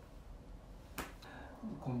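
A single sharp snap made by a man's hands about halfway through, with a short room echo after it. Near the end a man starts speaking.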